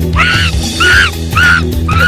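A string of short, shrill cries, about two a second, each rising and falling in pitch, over a film score's low sustained drone.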